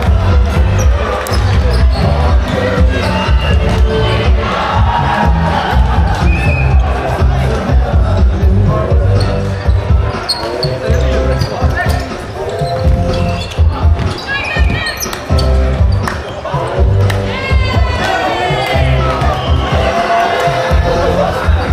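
Busy sports-hall ambience during indoor volleyball play: background music over the hall, players and spectators calling out, and the thud of the volleyball being hit and bouncing on the wooden court floor.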